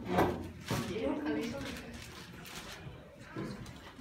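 Children's voices talking in a room, with two brief loud sounds within the first second.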